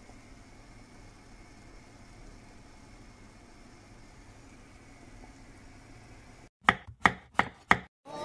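A pot of chicken and bones simmering in water on a gas stove, heard as a faint steady hiss. Near the end come four sharp, loud, slightly ringing knocks in quick succession, about three a second.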